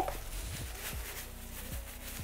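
Thin plastic bag rustling and crinkling softly as it is knotted by hand around a ball of dough, with a few faint low knocks.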